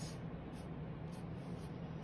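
Faint scratchy strokes of a small paintbrush laying paint onto paper, over a steady low hum.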